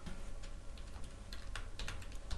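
Computer keyboard being typed on: a handful of light, irregularly spaced key taps.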